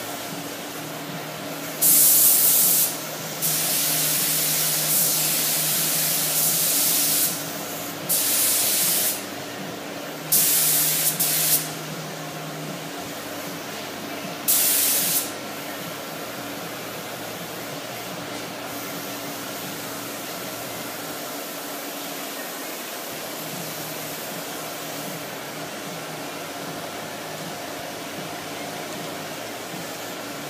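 Compressed-air paint spray gun laying down clear coat: five hissing passes of one to four seconds each in the first half, then it stops. A steady hum runs underneath throughout.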